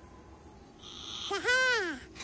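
A cartoon lizard character's voice: a short hiss about a second in, then a pitched vocal cry that rises and falls, lasting about half a second.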